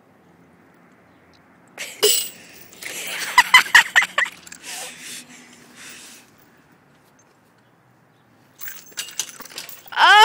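A playground swing's metal chains clink and rattle as the swing is flung over the top bar, once about two seconds in and again near the end. A short burst of laughter comes in between.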